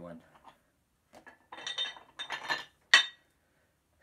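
Metal weight plates being handled, clinking and knocking against each other several times, with one sharp, loud clank near the end.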